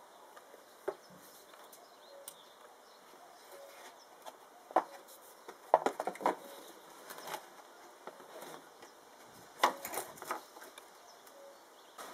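Scattered light clicks and knocks of a plastic power-steering fluid reservoir, a Volga 3110 part, being handled and pressed into its holder, with rubber hoses moved about. The louder knocks come about five, six and ten seconds in.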